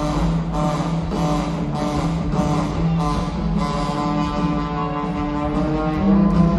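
Live rock band jam with a trombone holding long notes over electric guitars and a steady drum beat of about two hits a second, heard from high in the arena's seats.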